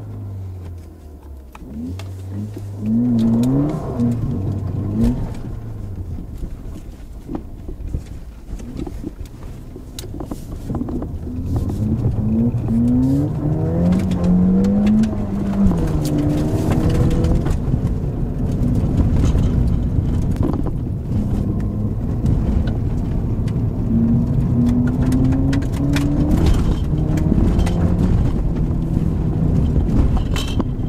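Ford Fiesta ST's 1.6-litre turbocharged four-cylinder engine pulling up a dirt road, heard from inside the cabin. The engine note rises in pitch several times and drops back between, over steady tyre and gravel noise with scattered small clicks.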